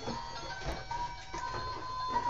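Electronic tune from a child's ride-on giddy-up horse toy, set off by a knock: thin, simple tones, with one long held note starting about halfway through.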